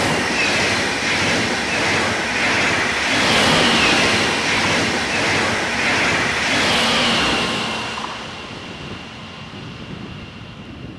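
IC2 double-deck InterCity train with a class 146 electric locomotive passing close at speed. A sudden loud rush of wheels on rail and air comes as it reaches the crossing, stays steady for about seven seconds as the coaches go by, then fades as it recedes, with a thin steady high tone lingering near the end.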